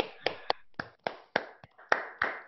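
Hand clapping heard over a video call: single, distinct claps at a steady pace of about three to four a second.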